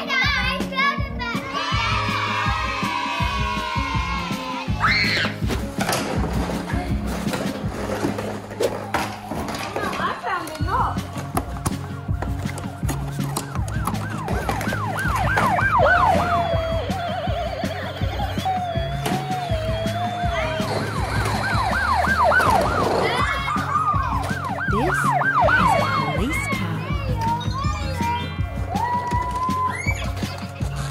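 Upbeat background music with a steady beat. Over it, a toy's electronic siren sounds twice, in quick repeated rising-and-falling sweeps: once midway through and again a little later.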